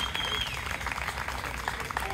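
Applause from a small audience: scattered, uneven claps, with a short high-pitched cheer in the first half-second.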